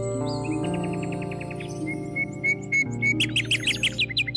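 Soft, slow meditation music with long held tones, mixed with recorded birdsong. The birds chirp in quick runs of evenly spaced notes, louder and faster near the end.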